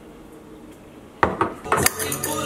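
Glass clip-top storage jar with a metal wire clasp being handled: after a quiet second, it is set down on the counter with a sharp knock, followed by a few quick clinks of glass and metal.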